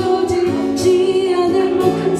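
A woman singing live, holding long notes into a microphone, over strummed acoustic guitar.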